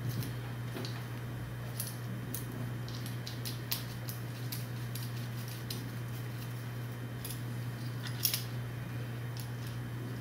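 Light, scattered metallic clicks and taps as stainless steel hard lines and their small fittings are handled and threaded on by hand, over a steady low hum.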